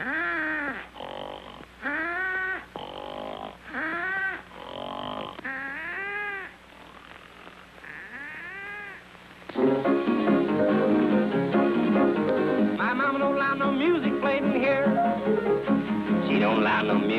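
Cartoon snoring sound effects from sleeping characters: a snore that rises and falls in pitch roughly every two seconds, each followed by a high, steady whistle. About two-thirds of the way through, loud music cuts in abruptly.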